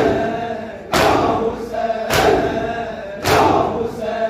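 Mourners beating their chests in unison in matam, a loud slap about once a second, in time with male voices chanting a noha.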